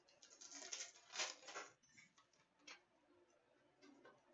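Faint crinkling and tearing of a foil trading-card pack wrapper being opened, in a few short rustles, followed by a few small clicks as the cards are handled and flicked through.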